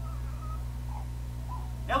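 A steady low electrical hum under a few faint, brief voice-like sounds, then a man starts speaking right at the end.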